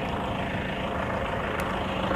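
Steady low mechanical rumble with a constant hum, like a motor or engine idling.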